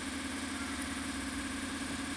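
A steady mechanical hum, like a motor running, holding the same level and pitch throughout.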